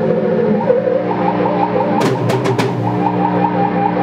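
Experimental electronic noise music played through laptops and effects pedals: layered sustained drones under a repeating warbling tone at about four pulses a second, with a sharp crack about two seconds in.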